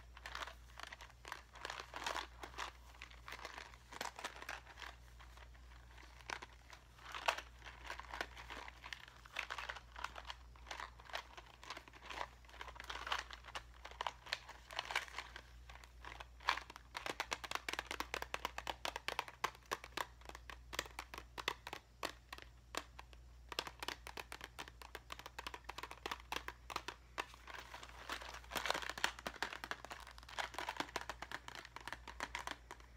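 A clear plastic package of craft jewels being squeezed and turned in the fingers: the plastic crinkles while the loose gems inside click against each other, in an irregular, fast run of crackles and small clicks.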